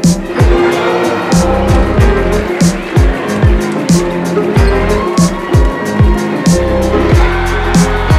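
Hip-hop backing music with a steady beat: deep bass kicks that slide down in pitch, regular sharp hits and sustained synth notes.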